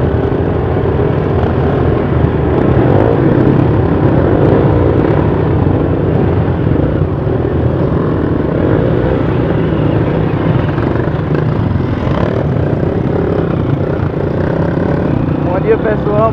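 Honda CRF230 dirt bikes' single-cylinder four-stroke engines running, heard close up from the rider's own motorcycle, as a steady loud rumble mixed with other bikes around it.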